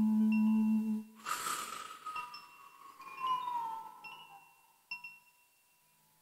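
A held sung note stops about a second in. After a short rush of noise, a Koshi chime tinkles with scattered ringing strikes that thin out and fade to near silence after about five seconds.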